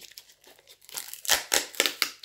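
Packaging being crinkled and torn open by hand, in a few sharp bursts in the second half after a quiet first second.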